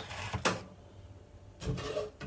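Kitchen handling noises: plastic food packaging rustling in the first half second, then a dull knock near the end.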